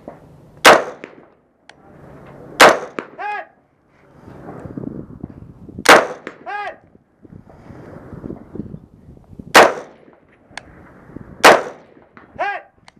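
Five rifle shots from an AR-style rifle, spaced unevenly a few seconds apart. After the second and third shots, a short metallic ping follows about half a second later: a distant steel target ringing as it is hit.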